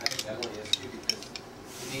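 Small plastic toy pieces being handled on the floor: a run of light clicks over soft rubbing, fading out about a second and a half in.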